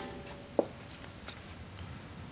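Metallic ringing dying away from a hammer tap on a steel punch staking the collar of a Subaru WRX front axle nut. A single light metal click comes about half a second in, then faint room tone.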